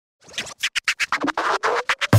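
Intro music sting: a choppy, stuttering scratch-like effect that starts about a quarter second in, its bursts coming faster while a tone rises beneath them, building toward a music drop.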